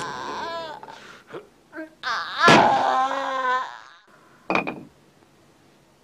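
Whining, wavering cries: a few short ones in the first two seconds, a longer one of nearly two seconds starting about two seconds in, and a brief one near the middle.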